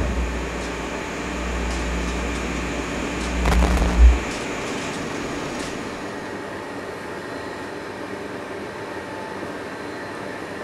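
Electronic sci-fi laser effect: a steady low hum with a sweeping tone that rises and falls about three and a half seconds in, ending in a brief loud swell near four seconds, when the hum cuts off suddenly. After that only a faint steady hiss remains.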